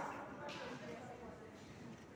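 Faint, indistinct voices in the background, over soft scratching as damp granules are rubbed by hand across a brass wire-mesh sieve, with a brief scratchy hiss about half a second in.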